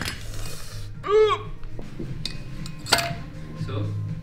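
Metal weight plates clinking and knocking as they are handled and loaded onto a loading pin, with a sharper knock about three seconds in. Background music plays underneath.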